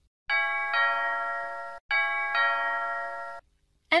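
Two-note ding-dong doorbell chime rung twice, each ring a higher note followed by a lower one and each cut off abruptly. It signals someone at the door.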